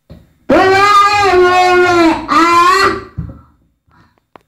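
A high voice singing two long held notes, the first about a second and a half long with a slight waver in pitch, the second shorter and ending about three seconds in.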